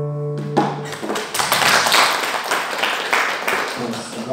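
Acoustic guitar's final strummed chord ringing out and dying away in the first second, followed by a few seconds of audience applause that fades near the end.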